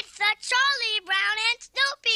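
High, child-like voices singing a short title jingle in a quick run of pitched syllables.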